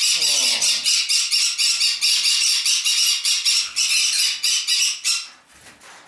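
A flock of Pyrrhura conures screeching loudly and without pause, many rapid overlapping high calls, cutting off abruptly about five seconds in.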